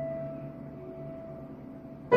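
A single held note on a Yamaha upright piano, ringing and slowly fading, then stopping shortly before the end.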